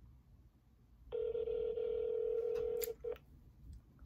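Telephone ringback tone heard through a smartphone's speakerphone while an outgoing call rings: one steady ring about two seconds long, starting about a second in, followed by a short blip.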